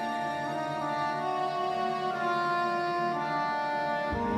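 Orchestral film score, brass to the fore, playing held chords that shift every second or so and swell slowly.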